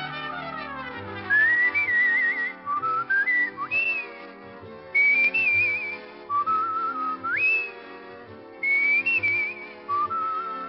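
A tune whistled with vibrato in three phrases over a brass band accompaniment, the radio show's opening theme. The whistling starts about a second in, after a falling slide from the band.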